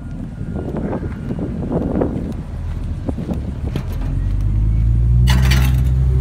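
A large engine running steadily at low pitch, its hum swelling loud about four seconds in, with a brief burst of hiss near the end. Scattered knocks and handling rustle sit over it during the first seconds.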